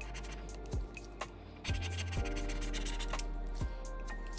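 Background music over a No. 17 X-Acto blade scraping old adhesive off an iPad's metal frame, in short scratchy strokes.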